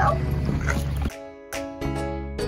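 A dog whining and yipping over a steady low hum, cut off about a second in by a music jingle of struck notes.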